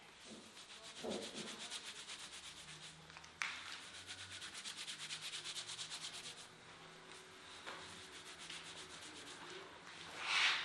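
Cotton towel rubbed briskly over wet hair: fast, even scrubbing strokes about four or five a second in two bouts, with a short break about three seconds in. The rubbing turns softer and slower after about six seconds.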